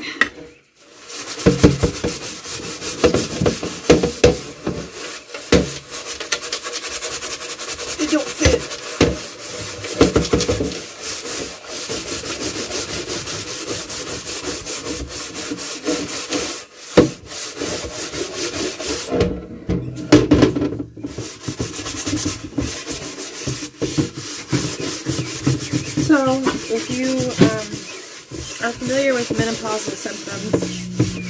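Scrubbing a large sheet pan in a kitchen sink: a continuous rasping rub of the scourer on the pan, stroke after stroke, with a couple of brief pauses about two-thirds of the way through.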